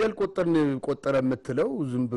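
Speech only: a man talking steadily, with no other sound.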